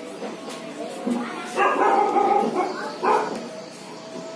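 A dog barking in three loud bursts, the longest lasting about a second just past the middle, over a murmur of voices.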